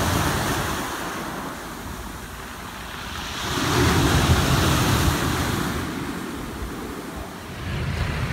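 Sea waves breaking and washing up a shingle beach, swelling twice, loudest about four seconds in, with wind rumbling on the microphone.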